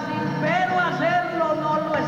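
A man singing an improvised trova verse, a chant-like melody of held notes, over strummed acoustic guitar.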